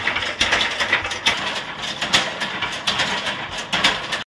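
Motor-driven masala pounding machine (kandap) with iron pestles pounding ground spice masala in its pan: a quick, uneven run of knocks, about three a second, over the machine's running noise.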